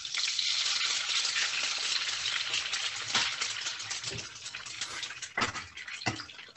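Food sizzling and crackling in a frying pan, which the teacher guesses is eggs being cooked, heard through an open microphone on a video call. The crackle starts suddenly, is densest in the first couple of seconds with a few louder pops, then eases off toward the end.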